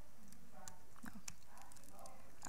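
Laptop keyboard typing: a few light, irregular key clicks.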